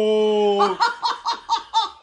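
A long, held scream stops about 0.7 s in. It is followed by laughter in quick, short bursts, about five a second.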